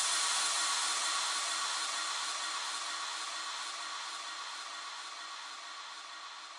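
A steady, hiss-like synthesized noise wash left ringing at the end of an electronic dance track, fading slowly, with a few faint held tones underneath.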